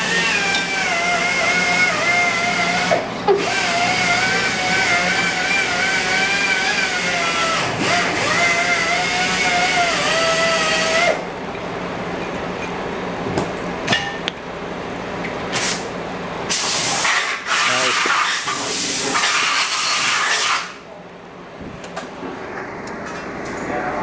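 Sunnen honing machine spinning its mandrel inside a Datsun truck spindle's kingpin bushing: a wavering whine over a steady hiss while the spindle is worked on the mandrel. The whine stops about eleven seconds in, leaving a lower machine sound with scattered clicks and a few bursts of hiss, and the level drops again near the end.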